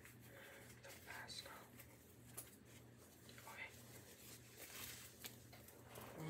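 Near silence: quiet room tone with a low steady hum and faint, scattered rustling as a cloth is handled.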